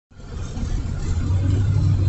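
A vehicle's engine running, heard from inside the cabin as a steady low hum that fades in over the first second.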